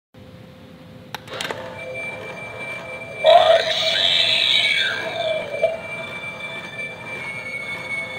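Animated dragon doorbell set off with a couple of clicks a little over a second in, then playing a recorded sound effect through its small speaker from about three seconds in, loud and wavering in pitch, then fading.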